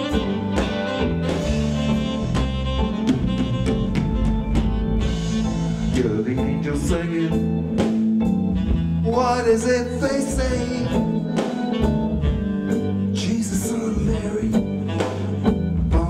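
Live band music: saxophone, electric guitar, bass, keyboard and drums playing together with a steady drum beat, and a man singing at the microphone from about nine seconds in.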